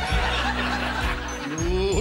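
Theatre audience laughing after a comic punchline, with the band's backing music held underneath.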